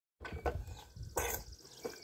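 Plastic toy push mower rolling and rattling over paving stones, with uneven clatter and one louder noise about a second in.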